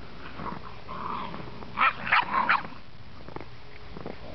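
Puppies play-wrestling, giving a quick run of four short, loud vocal sounds about two seconds in.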